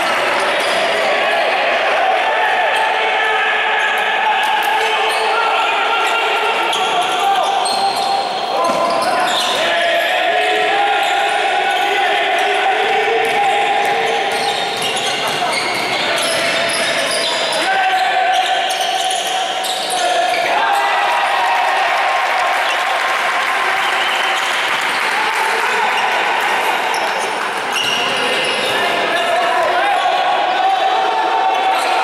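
Live basketball play echoing in a sports hall: a basketball bouncing on the court as it is dribbled, with players and others calling out over the game noise.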